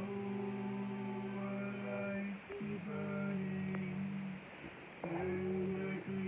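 A slow song sung in long, drawn-out held notes, with short pauses between phrases about two and a half and five seconds in.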